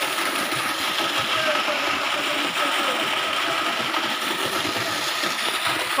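Water gushing from a pipe into the pool at the bottom of a well: a steady rush with a mechanical running hum under it.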